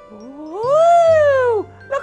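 A person's voice giving one long, drawn-out "ooooh" of wonder that rises in pitch and then falls, over soft background music.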